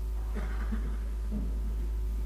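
A pause in the music: a steady low hum, with faint irregular noise from about a third of a second to a second and a half in.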